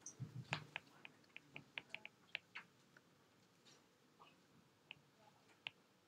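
Faint, irregular clicks of a stylus tapping and stroking on a tablet's glass screen during handwriting, frequent in the first half and thinning out after.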